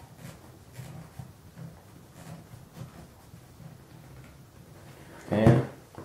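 Faint handling noises of fingers twisting a threaded compression collar onto a methanol nozzle fitting over plastic hose, with a few soft clicks and rubs. A short loud voice sound comes near the end.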